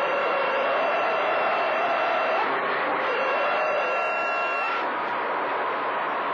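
CB radio receiver on channel 28 picking up long-distance skip between transmissions: loud, steady static hiss with several steady whistles from overlapping carriers and one wavering tone, plus faint garbled chatter.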